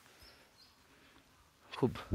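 Near-silent woodland ambience with a couple of faint, short, high bird chirps in the first second; a man's voice speaks a word near the end.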